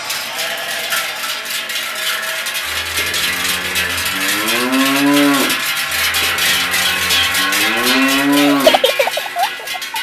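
Cattle wearing cowbells: the bells clang densely and without a break, and two long moos, each rising in pitch, come about three seconds in and again about six seconds in.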